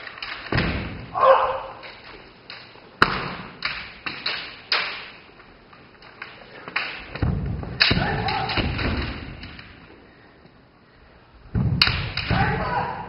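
Kendo sparring on a wooden gym floor: repeated sharp cracks of bamboo shinai striking armour and each other, heavy thuds of stamping footwork, and shouted kiai, busiest around a second in, again from about seven to nine seconds, and near the end.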